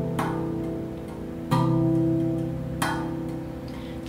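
Slow instrumental music: a clean electric guitar strikes three chords, about every second and a half, each left to ring and fade, with a Rav steel tongue drum played along underneath.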